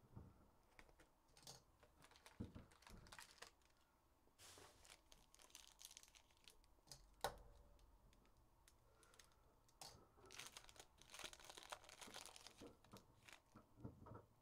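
Faint crinkling and tearing of a foil trading-card pack wrapper as it is opened, among light clicks and taps from handling the box and cards, with one sharper click a little after seven seconds.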